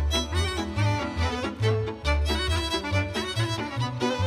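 Instrumental introduction of a Romanian folk song, a violin playing the lead melody over a deep, steadily stepping bass line.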